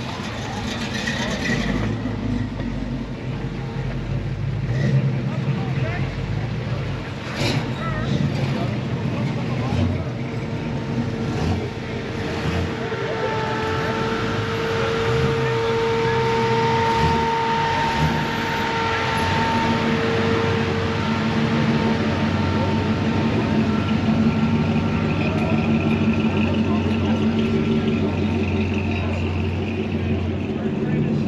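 A car engine idling steadily close by, amid background voices.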